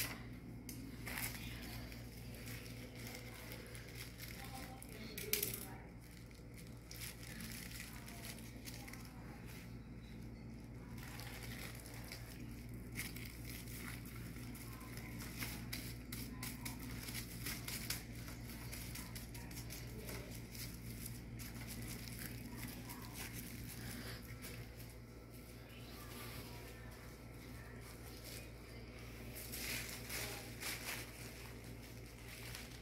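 Thin plastic garbage-bag sheeting rustling and crinkling as hands handle and smooth it over a bamboo kite frame, with a few sharper taps, over a steady low hum.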